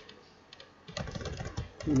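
Computer keyboard being typed on: a single keystroke at the start, then a quick run of keystrokes from about halfway through.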